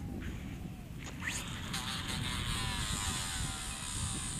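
A surf-casting swing about a second in, then a Newell 338 conventional reel's spool spinning fast as 80 lb braided line pays out during the cast. It makes a steady high whine whose pitch falls slowly as the spool slows under the caster's thumb.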